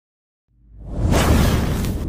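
Whoosh sound effect for a fire-blast intro animation. It is silent at first, then a rushing sound with a deep rumble swells up about half a second in and is loudest near the end.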